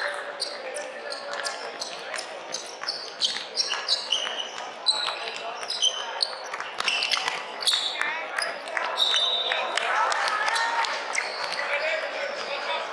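Basketball bouncing repeatedly on a hardwood court in a large echoing hall, with short high sneaker squeaks and players' shouts near the end.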